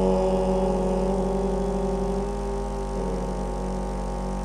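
A group of voices chanting one long, sustained "Om" in unison, held at a steady pitch and easing off slightly in loudness toward the end.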